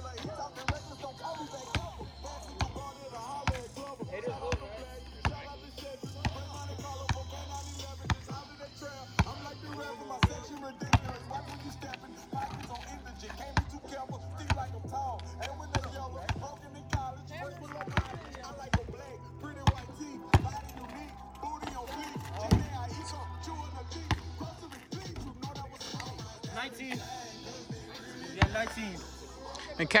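A basketball bouncing on asphalt pavement, sharp single bounces at irregular intervals of about a second, over music with a heavy repeating bass line and vocals.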